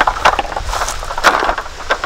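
Metal roll-top camp tabletop being slid out and handled, its slats clicking and clattering in an irregular string of sharp clicks, over a low wind rumble on the microphone.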